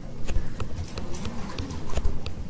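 Stylus tapping and knocking against a tablet screen while drawing by hand: a string of irregular sharp clicks, several a second, mixed with dull low knocks.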